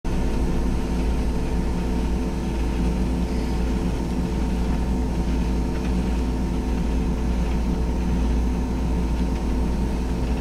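Ballast regulator running along the track with a steady engine drone and a constant sweeping rush from its rotating ballast broom working the ballast.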